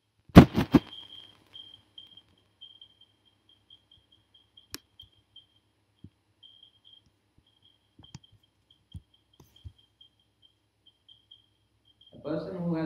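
A quick cluster of three or four loud knocks about half a second in, then scattered soft clicks of a laptop keyboard and trackpad being worked, with a faint high pulsing tone underneath.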